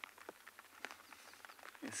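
Light rain beginning to fall: faint, scattered drops ticking at irregular intervals over a quiet outdoor background.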